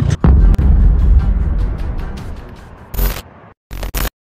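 Edited-in outro sound effect: a deep boom about a quarter of a second in that dies away over about three seconds under a run of faint ticks, then three short loud bursts near the end.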